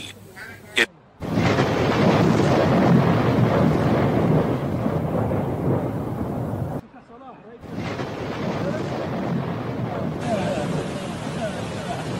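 Loud, steady roar of a muddy flood torrent sweeping cars down a street, heard through a phone's microphone. It breaks off for under a second about seven seconds in, then carries on slightly softer.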